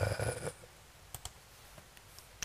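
A man's drawn-out hesitation "euh" trails off about half a second in, then a few quiet computer mouse clicks as he switches between virtual desktops.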